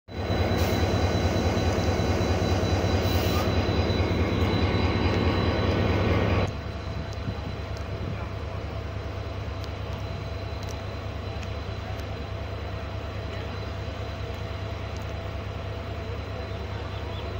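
Diesel-electric locomotive (HGMU-30 class) engine running close by, loud and steady with a strong low hum. It cuts off abruptly about six and a half seconds in to a quieter steady hum beside the train's coaches.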